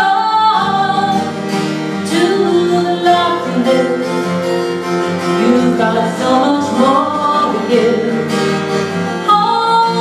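A woman singing over her own strummed acoustic guitar, performed live.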